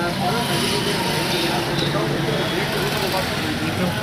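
Indistinct voices of several people talking at once, over a steady low hum of a vehicle engine running.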